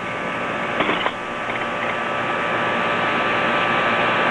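Steady hiss of propane gas flames from a torch and burner heating the aluminum part, with one short knock about a second in.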